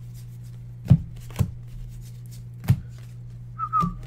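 Trading cards being handled on a desk: four sharp snaps as cards are flipped and squared in the hand, irregularly spaced, over a steady low electrical hum. A short whistle-like tone sounds near the end.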